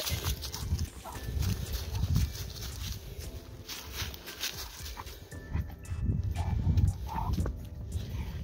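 A dog on a leash moving and nosing through dry fallen leaves, with crackling leaf rustles and footsteps, and irregular low rumbling on the microphone.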